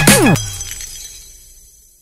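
An editing transition sound effect ends the dance music: a sudden loud hit with tones sweeping down in pitch, then a ringing tail that fades over about a second and a half to near silence.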